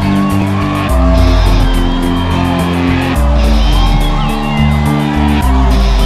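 Loud rock music with guitar over a steady drum beat, its bass chords changing about every two seconds.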